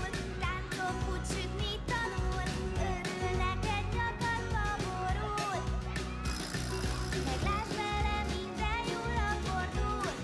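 Children's TV cartoon theme song: a sung melody over a band with a steady, regular beat.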